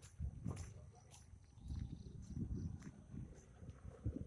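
Footsteps on a road, about two a second, with low rumbling handling noise on a phone microphone, over a steady high chirring of night insects.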